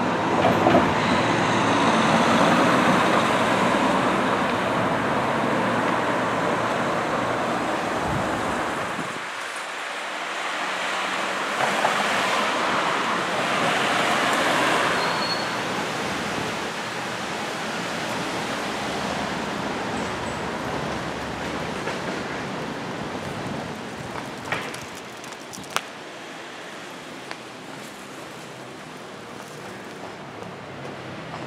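Road traffic on a city street: vehicles passing, loudest through the first eight seconds and again around twelve to fifteen seconds in, then a quieter steady hum with a couple of sharp clicks near the end.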